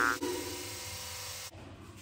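The fading tail of an edited-in cartoon-style sound effect: its tones die away, with a click a moment in. It cuts off suddenly about one and a half seconds in, leaving only a faint low hum.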